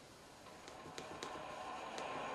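Motorized skein winder starting up: its motor begins running quietly about half a second in and slowly gets louder, with a faint steady whine and four light clicks.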